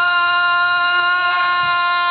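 A male rock singer holding one long, steady high note, the closing wail of a hard rock song, with almost no band sound under it.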